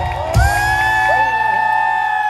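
Live qawwali music over a PA: a singer holds one long note with slight bends, and a drum stroke lands about half a second in.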